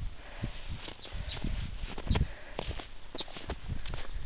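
Footsteps through fresh snow: an uneven series of soft low thuds, a few a second, along with the rustle of a handheld camera being carried.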